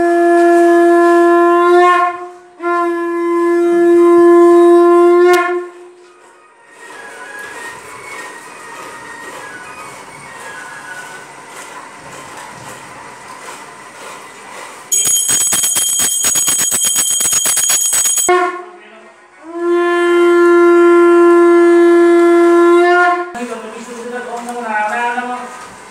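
A conch shell (shankha) blown in long, steady, single-note blasts: two in the first five seconds and a third near the end. Midway, a hand bell rings rapidly for about three seconds.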